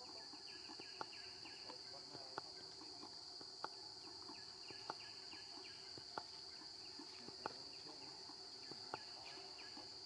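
Insects droning steadily at one high pitch, with a short, sharp tick repeating about every second and a quarter, seven or eight times.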